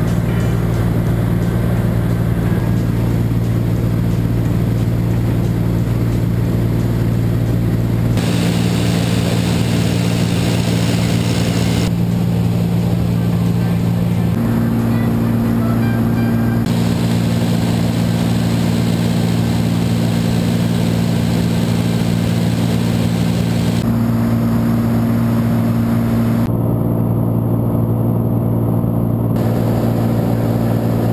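Light single-engine propeller aircraft's engine and propeller droning steadily, heard from inside the cabin. The drone's pitch and tone jump abruptly several times.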